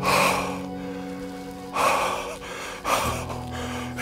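Three heavy, gasping breaths about a second apart, from a man out of breath with excitement after a bow kill, over sustained background music.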